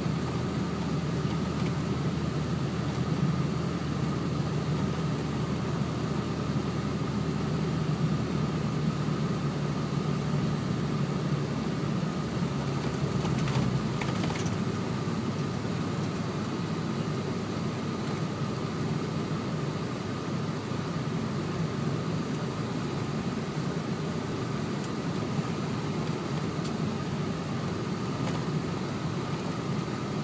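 Steady engine and tyre noise heard inside the cab of a 2007 Dodge four-wheel-drive truck driving on snow-covered roads. The deepest rumble eases about halfway through.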